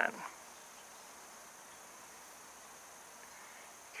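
Quiet room tone: a faint steady hiss with a thin high-pitched whine and no handling clicks.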